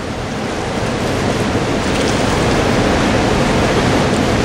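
Steady rushing of a fast-flowing river's current, an even noise with no breaks.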